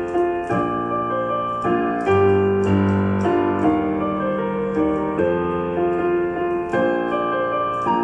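Digital piano playing a pop-song arrangement, a melody over sustained low bass notes and chords that change every half second or so.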